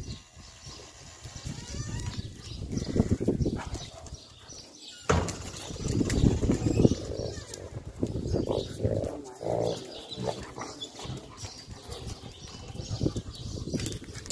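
Two Gaddi dogs play-fighting, with rough growling in irregular bursts throughout and a sharp click about five seconds in.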